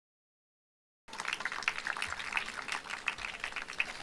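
Silence for about a second, then an audience clapping: a dense, irregular patter of hand claps.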